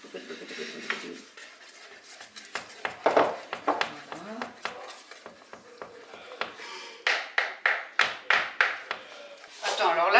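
A wooden spatula stirring thick melted chocolate and egg yolk batter in an enamel saucepan, scraping against the pan. The stirring turns into quick, regular strokes, about three a second, in the last few seconds.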